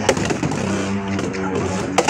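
Beyblade X spinning tops whirring across a plastic stadium floor just after launch: a steady hum with several held tones. A sharp click near the end as the tops strike.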